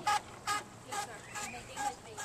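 Faint voices of people talking in the background, in short broken bits.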